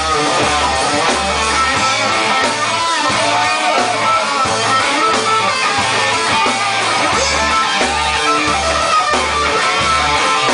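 Live rock band playing loud: electric guitar over bass and drums, with the low bass notes pulsing in a regular rhythm.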